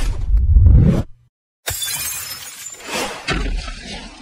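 Cartoon fight sound effects: a loud, deep rumbling whoosh for about a second, a brief silence, then glass shattering with a long tinkling, hissing tail that fades out.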